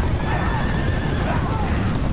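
A mounted charge of many horses galloping, their hooves making a dense, continuous rumble, with horses whinnying over it in short calls that bend up and down.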